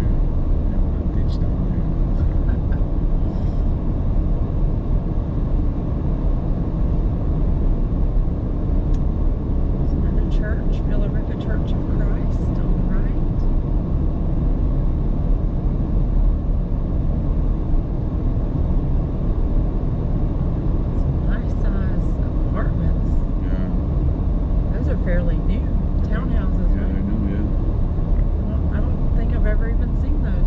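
Steady low rumble of a car driving along a road, tyre and engine noise with no change in speed.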